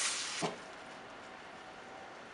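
Ground-turkey marinara sauce sizzling in a frying pan, the sizzle dying away within the first half second with a single knock, leaving a faint steady hiss of the simmering sauce.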